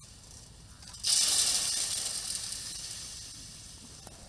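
A shovelful of loose fill tipped down a polished steel chute: a sudden hiss about a second in as it pours and slides down, tailing off over the next few seconds.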